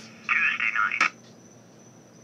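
A tinny, narrow-band voice from the Bearcat 101 scanner's speaker, the sound of a received radio transmission, cut off by a sharp click about a second in as a channel switch is flipped off. Only faint hiss follows.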